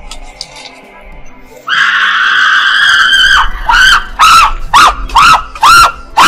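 After a quiet second and a half, a long, loud scream held for nearly two seconds, then a run of short rising-and-falling wailing cries about two a second, over background music.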